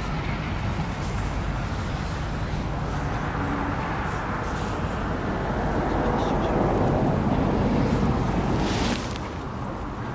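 Wind rumbling on the microphone with outdoor ambience, swelling into a louder rush over the middle that drops off suddenly near the end.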